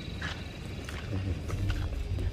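Low rumble of wind buffeting the microphone, growing stronger in the second half, with faint voices in the background.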